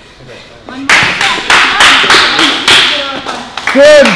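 Hands clapping steadily, about three claps a second, starting about a second in, with short shouts of encouragement in between.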